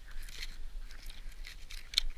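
Dry grass stems rustling and crackling against the head-mounted camera and gear, a string of irregular short crackles with one sharper click near the end.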